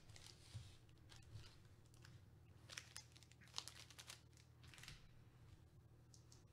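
Faint crinkling of foil trading-card pack wrappers being handled, in a few short crackles over a low room hum.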